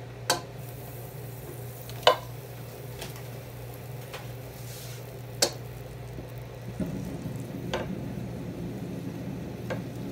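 Butter melting in a pot, pushed around with a wooden spoon that knocks against the pot a few times. A soft sizzle thickens about seven seconds in as the butter heats.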